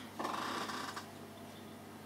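A short, scratchy rustle of a plastic paint dropper bottle being handled, lasting under a second.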